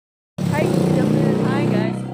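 A motor vehicle's engine running close by, a steady low hum, with people's voices over it. It starts suddenly about half a second in.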